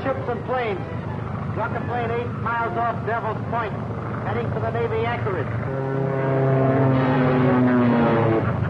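Propeller aircraft engine drone from an early sound-film track, with rising-and-falling pitched swoops over it. After about five and a half seconds a steady held tone takes over and grows louder.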